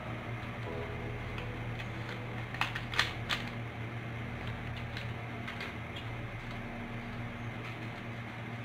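A foil sachet of powdered milk crinkling in the hands as it is emptied into a bowl of flour, giving a few sharp clicks about three seconds in, over a low steady hum.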